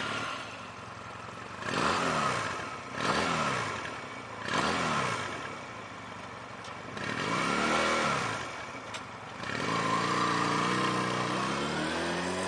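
A 2013 Honda Rebel 250's 234cc twin-cylinder engine idling and being revved four times, each rev rising and falling back to idle. About ten seconds in, the bike pulls away in gear with a steady, gradually rising engine note.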